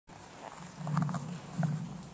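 A person's low voice murmuring briefly, twice.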